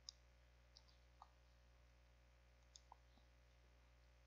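Near silence: room tone with about five faint, short clicks spread through it, the first one the loudest.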